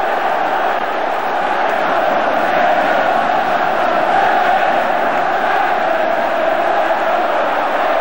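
Football stadium crowd chanting and singing together, a steady mass of voices.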